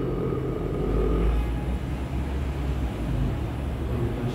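A low, steady rumble with a hum, strongest in the first second or two.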